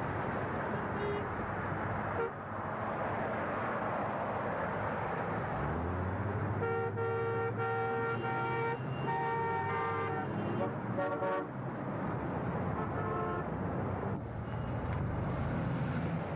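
Road traffic at an intersection: car engines and tyres running steadily, with a lower engine drone joining about six seconds in. Car horns honk repeatedly from about seven to thirteen seconds in, some long blasts and some quick short toots.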